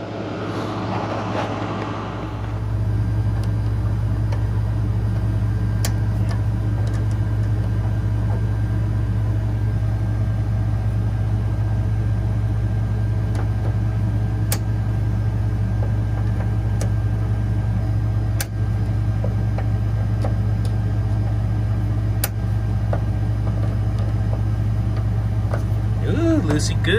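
Steady low electrical-machine hum from running refrigeration equipment, stepping up louder about two seconds in and holding even, with a few sharp clicks as a screwdriver works the contactor's terminal screws.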